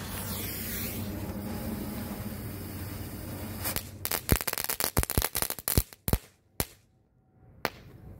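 Small F1 crackling firecracker: a steady hiss for about three and a half seconds, then a rapid, irregular string of sharp cracks that thins out, with one last crack near the end.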